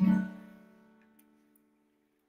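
An acoustic guitar's last strummed chord ringing out at the end of a sung verse, fading away over about a second.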